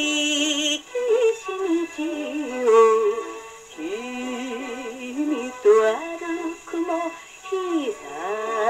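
A Japanese popular song with a woman singing and a band behind her, played from a 78 rpm record on an acoustic phonograph with a soft-tone steel needle. It opens on a held sung note with vibrato, then the melody moves on.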